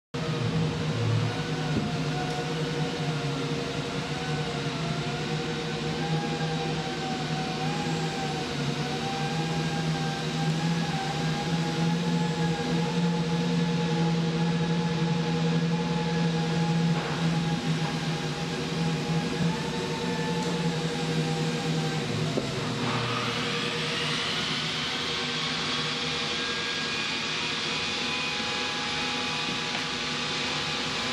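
Steady machinery hum with a constant drone and a slowly wavering higher tone. About 23 seconds in, a motor spins up: its whine rises and then levels off.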